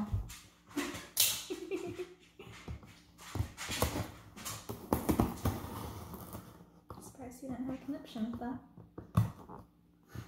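A knife blade cutting through the packing tape and cardboard of a shipping box, in a series of short scraping strokes and knocks against the box.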